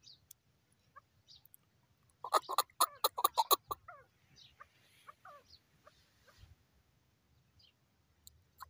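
Chukar partridge calling: a rapid run of loud, evenly repeated chuck notes starting about two seconds in and lasting about a second and a half, then softer scattered notes.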